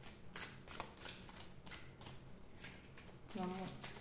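A deck of tarot cards being shuffled by hand, a quick string of soft card strokes at about three a second. A woman's voice starts near the end.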